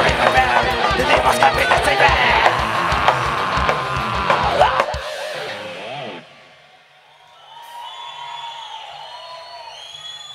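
Heavy metal band playing live, with distorted electric guitars and a fast kick-drum pulse, cutting off abruptly about five seconds in. Faint, quieter sounds with some wavering tones follow for the rest.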